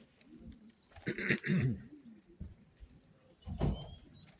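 A person's voice making a short, wavering vocal sound lasting under a second, about a second in, followed by a brief noisy burst near the end.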